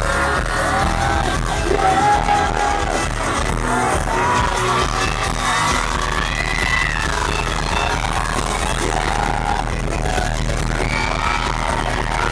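Live K-pop concert music from the venue's loudspeakers with a steady heavy bass beat, heard from the audience, with voices singing and fans screaming and cheering along.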